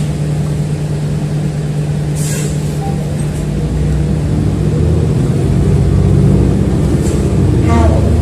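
Transit bus running, heard from inside the passenger cabin: a steady low drone that grows louder about halfway through, with a short hiss about two seconds in.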